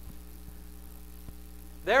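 Steady low electrical mains hum from the microphone and sound system, with a couple of faint clicks. A man's voice starts speaking right at the end.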